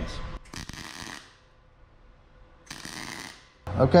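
MIG welder laying two short tack welds on a steel sheet-metal patch panel, each burst of arc noise lasting under a second, the second starting about two seconds after the first.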